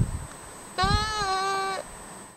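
A person bleating 'baa' in imitation of a sheep: one held call about a second long, slightly falling in pitch. A low thump comes just at the start.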